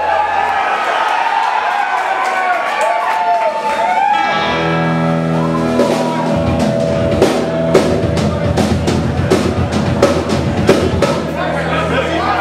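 A loud live rock band starting a song. After a few seconds of a voice, a sustained guitar and bass chord comes in about four seconds in, and the drum kit joins about two seconds later with steady, regular hits.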